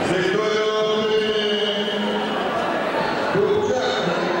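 Voices echoing in a large sports hall: crowd chatter, with one voice drawing out a long held tone through the first half and a shorter one near the end.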